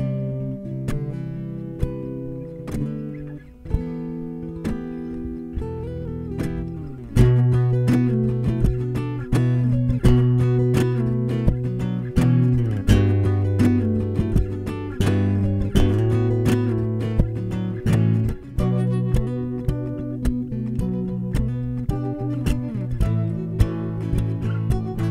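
Enya NEXG 2 smart guitar playing a layered loop of plucked notes built up on its looper; about seven seconds in, a louder layer with low bass notes joins the repeating phrase.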